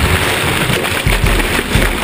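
Water rushing and churning over a camera held down in the bow wave of a moving sailboat, heard muffled from just under the surface: a steady low rumble with irregular surges.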